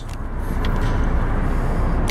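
Steady low rumbling background noise with no distinct knocks or clicks.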